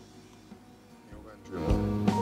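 Instrumental backing track of a pop song starting up: a few quiet sustained notes, then the full accompaniment with a drum beat and chords coming in loudly about one and a half seconds in.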